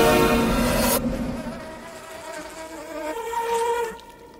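A loud sustained chord of score music cuts off sharply about a second in, leaving a thin, steady insect buzz, a fly-like drone, that swells toward the end and stops abruptly.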